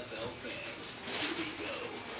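Staffordshire terrier rooting with her nose in a trouser pocket for food: low grunting, with a sharp sniff about a second in, over a television voice in the background.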